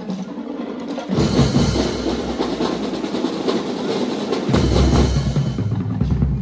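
Drum and lyre corps drum line playing: a rapid snare drum roll picks up about a second in, and deep bass drum beats join about four and a half seconds in.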